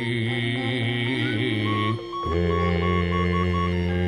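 Javanese gamelan music accompanying a wayang kulit performance: a wavering, chant-like melodic line over sustained instrument tones, which breaks off about two seconds in. Deep sustained tones then take over, with a run of short repeated high notes.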